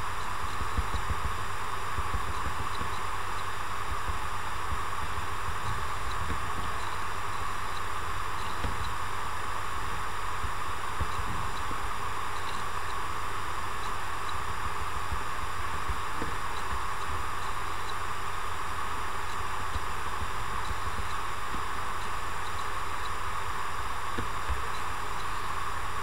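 Steady background hiss with a low hum underneath, unchanging throughout, from the recording's microphone and room noise; nothing else happens.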